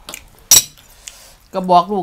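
A single sharp clink of serving tongs against the noodle platter about half a second in, ringing briefly. A woman starts talking near the end.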